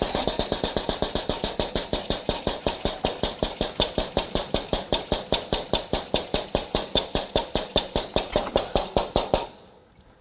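Air-operated diaphragm pump on a filter press cycling rapidly, a fast even clatter of about six strokes a second, as it pumps liquid through to flush the filter cake. It stops suddenly near the end.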